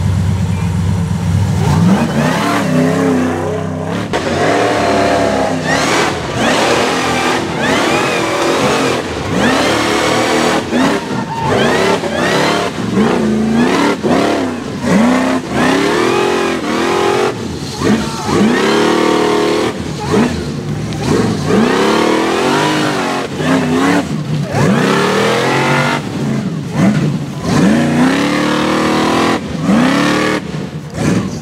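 A rock bouncer buggy's engine runs steadily for about two seconds. It is then revved hard again and again as the buggy climbs a steep rocky hill, its pitch sweeping up and dropping back many times in quick succession.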